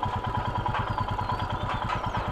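Motorcycle engine running steadily at low revs, an even rapid thudding of about a dozen beats a second.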